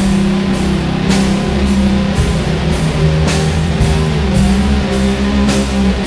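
Instrumental passage of a doom metal song: distorted electric guitars hold low notes over a drum kit keeping a steady beat, with a hit about twice a second.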